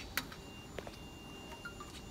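Quiet handling noise: a sharp click near the start, then a few faint knocks as aluminium aerosol cans and metal fittings are set down on a stainless-steel machine table, over a faint steady high tone.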